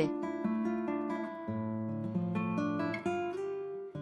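Background music on acoustic guitar: picked notes ringing over held chords, with the bass note changing about halfway through.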